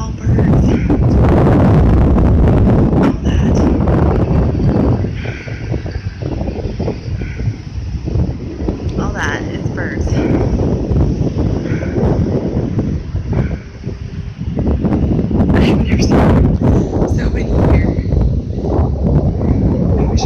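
Wind buffeting the microphone, a loud rumble that eases off through the middle and comes back stronger near the end.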